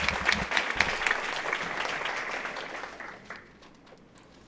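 Audience applause, many hands clapping, dying away about three seconds in.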